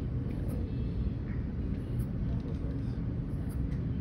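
A steady low rumble of room background noise.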